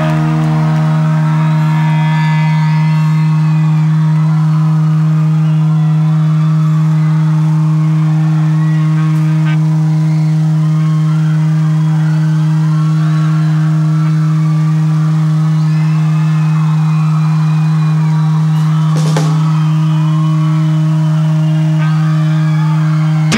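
Electric guitar feeding back through its amplifier as one steady low drone that barely changes, with a crowd shouting and whistling underneath. The drone wavers briefly about nineteen seconds in.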